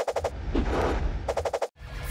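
Electronic transition sound effect: a rapid stutter of clicks, a hissing swell over a low rumble, then a second rapid stutter, cutting off suddenly near the end.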